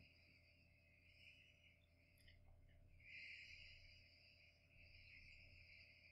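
Near silence: room tone with a faint high hiss that comes and goes.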